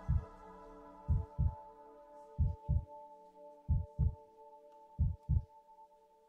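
Heartbeat sound effect: paired low lub-dub thumps repeating about every 1.3 seconds, four pairs, over a soft sustained synth pad chord.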